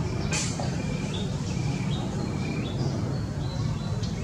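A steady low rumble with short, high bird chirps about twice a second, and a single sharp click just after the start.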